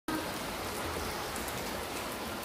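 Rain falling steadily, an even, unbroken noise of many drops.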